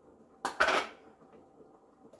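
Kitchenware clattering once, about half a second in: a sharp click, then a short rattle, as a blender lid and a strainer are handled over a metal pitcher.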